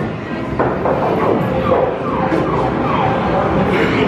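Electronic game sound from a claw machine: a string of short falling beep sweeps, about two or three a second, starting about half a second in over a steady arcade din.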